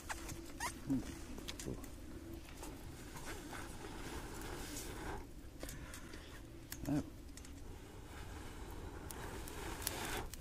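A person blowing repeated breaths onto glowing charcoal in a barbecue grill to get it hotter, a rushing hiss of breath with a short break about halfway through.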